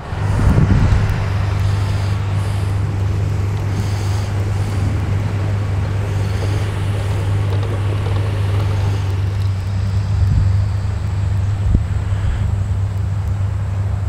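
A steady low drone, like an engine or motor running without change, under an even rushing noise.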